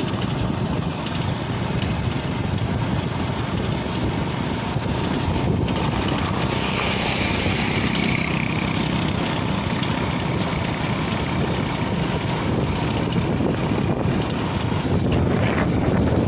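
Steady wind rush on the microphone mixed with the road and engine noise of a vehicle travelling along a paved road, without let-up.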